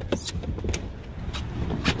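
A person climbing out of the back seat of a 2021 Toyota RAV4: several short clicks and knocks from the rear door opening and from getting out, over a steady low rumble of the phone being handled.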